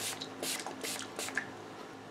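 Aloe face spray being applied to the face by hand: a quiet series of short, soft hissing strokes, about two or three a second.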